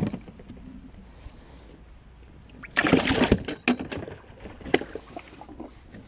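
Largemouth bass put into a boat's livewell: a knock from the lid at the start, a short splash of water about three seconds in, then a few light knocks from the lid.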